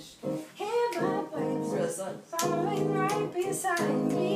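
Rough voice-memo demo of a gospel song playing back: a singer's melody over guitar accompaniment, with a few finger snaps on the beat.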